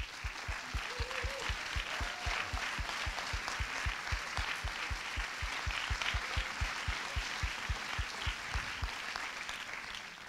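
Audience applauding, with a steady low beat of about four strokes a second running underneath that fades out near the end.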